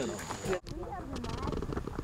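People talking while walking on a gravel trail, with footsteps on the gravel; the sound breaks off sharply for an instant about half a second in.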